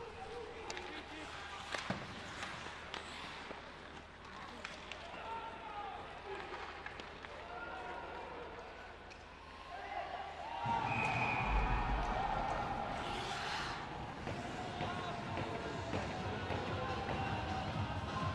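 Ice hockey game sound in a near-empty arena: sticks, puck and skates clacking on the ice. About ten and a half seconds in, louder arena music and crowd noise start and carry on.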